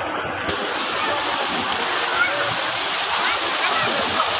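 Fountain jets splashing into a pool: a steady rushing splash that grows brighter and fuller about half a second in, with the chatter of a crowd beneath it.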